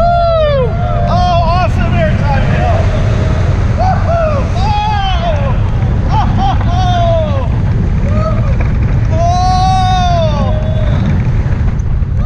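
Riders on an Intamin launched steel roller coaster yelling and whooping, short cries that rise and fall in pitch about once a second, over a loud, constant low rumble of wind buffeting and the train running on the track.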